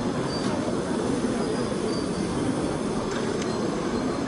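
Steady low din of a busy exhibition hall, an even rumbling noise with a few faint, short high tones.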